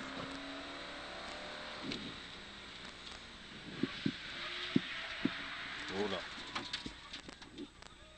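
Mercedes 500SLC rally car's V8 engine and road noise heard from inside the cockpit, fairly subdued, as the car brakes for a corner, with a few sharp knocks from inside the car around the middle.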